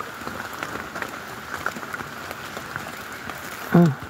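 Steady rain falling, with many small drop ticks scattered through it.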